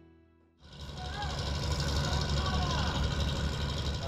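Background music fades out. About half a second in, the steady low rumble of a fishing boat's engine running on the water comes in.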